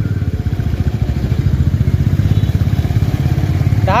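Motorcycle engine running at low speed in slow traffic, with a rapid, even low pulse, heard from the rider's seat. A voice starts right at the end.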